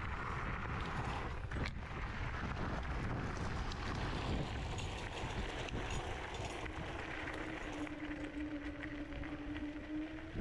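Dual-motor Kaabo Mantis 10 Pro electric scooter riding over a gravel trail: tyres rolling and crunching on loose gravel with wind on the microphone. A steady whine comes in about seven seconds in.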